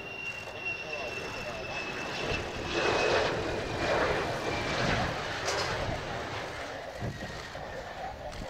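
An F-4EJ Kai Phantom II's twin J79 turbojets on landing: a high whine that falls slightly in pitch over a jet roar. The roar grows loudest about three seconds in as the jet passes low and close, then eases off as it settles onto the runway.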